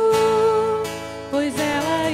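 A worship refrain sung with acoustic guitar accompaniment. The voice holds one long note, then starts a new phrase about one and a half seconds in.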